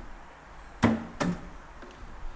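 Damped strokes of a hand across acoustic guitar strings: three short knocks in the second half, the first the loudest, with hardly any notes ringing after them.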